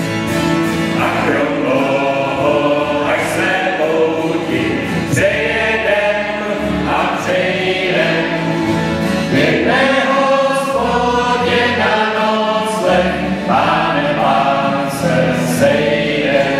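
A mixed group of men's and women's voices singing a song together in a church, with double bass and acoustic guitar accompaniment.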